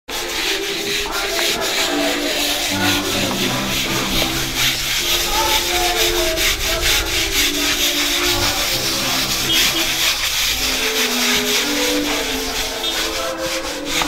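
Stiff plastic hand scrub brushes scrubbing wet, soapy concrete steps in quick back-and-forth strokes, a continuous rasping. Music with held notes plays underneath.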